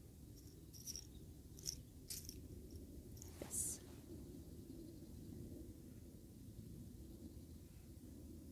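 Faint steady low background rumble, with a few soft clicks and crunches in the first four seconds: a small dog chewing a training treat.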